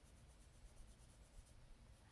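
Faint scratching of a Polychromos colored pencil on paper in quick repeated strokes, blending a light shade over darker layers.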